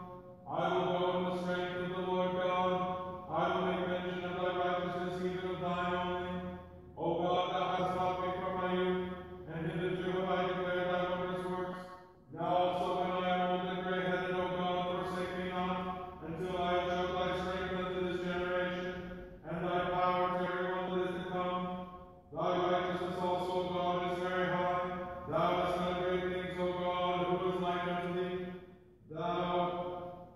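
Orthodox liturgical chanting: a voice chanting on a near-steady reciting tone in phrases of about three seconds, with short pauses for breath between them.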